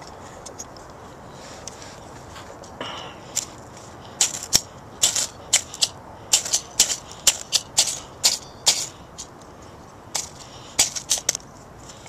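Blast Match ferrocerium-rod fire starter struck repeatedly against tinder: a string of short, sharp strikes about twice a second starting about four seconds in, then a quicker few near the end. The strikes fail to light the tinder.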